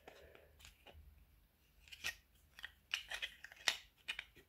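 Faint handling clicks and light taps of small plastic model-kit parts on a cutting mat: nearly quiet at first, then a run of short sharp clicks in the last two seconds.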